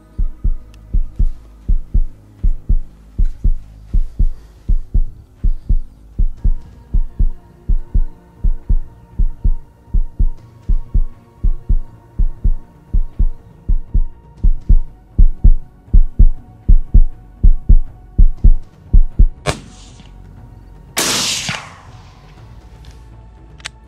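A heartbeat sound effect of quick, even deep thumps over a low held music drone, growing louder about two-thirds of the way in. A short sharp crack comes near the end, then a loud burst of noise lasting about a second.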